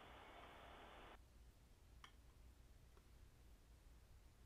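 Near silence: a faint hiss that cuts off about a second in, then two faint ticks about a second apart.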